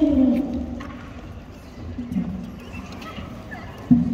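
A voice trails off, then a quieter stretch with a few faint knocks, typical of footsteps on a wooden stage deck, before the next voice starts.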